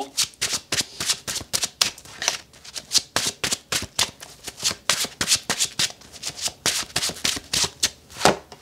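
A deck of gilded tarot cards being shuffled by hand: a quick, uneven run of light card slaps and flicks, several a second.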